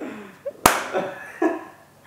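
A woman laughing softly, with a single sharp slap about two-thirds of a second in.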